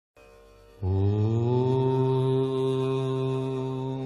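One long, low chanted note, mantra-like: after a faint lead-in it comes in about a second in with a slight upward slide, then is held steady on one pitch and slowly fades.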